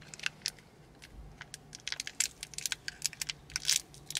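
Thin plastic wrapper of a Toxic Waste sour candy being crinkled and torn open by hand: a quick run of sharp crackles that gets busier about halfway through.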